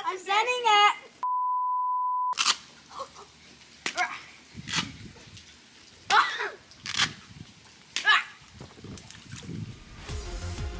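A steady, even-pitched bleep tone lasting about a second, starting about a second in, with everything else cut out beneath it: an edited-in censor bleep over a spoken word. Short scattered voice sounds follow.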